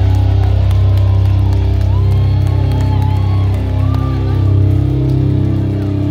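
Live rock band playing loud, with electric guitars and bass holding sustained, ringing chords and few drum hits.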